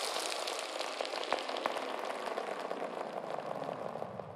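Crackling, hissing electronic noise texture like static or rain, full of small irregular clicks, slowly fading away with no beat: the tail of a drum and bass track.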